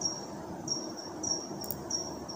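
High-pitched insect chirping in an even rhythm, about three chirps every two seconds, over faint room noise.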